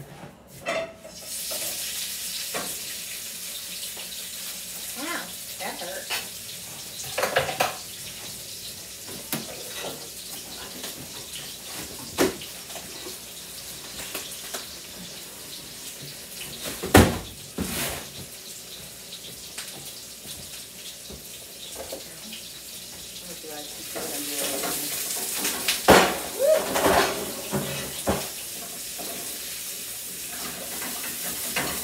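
Onions sizzling steadily in olive oil in a frying pan, the sizzle growing louder for a few seconds near the end. Occasional clanks of utensils and pans, the sharpest about halfway through.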